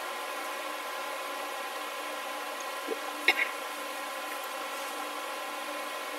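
Steady background hum made of several steady tones, with a few short faint clicks about halfway through.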